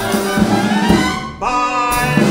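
Live orchestra with brass playing show music; the sound drops away briefly just before one and a half seconds in, then the ensemble comes back in on a held chord.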